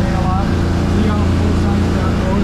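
150 hp outboard motor running at speed, a steady low drone, with water rushing past the hull.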